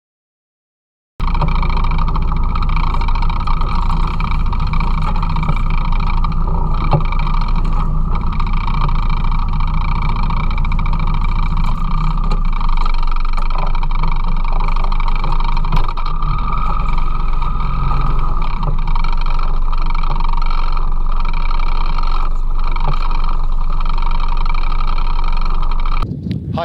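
A rigid inflatable boat's engine running at a steady speed, heard from on board as a constant hum with a steady pitch. It starts about a second in, after a short silence.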